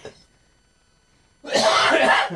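A man coughing hard and clearing his throat in one harsh burst about a second long, starting past the middle, which he puts down to a dry throat.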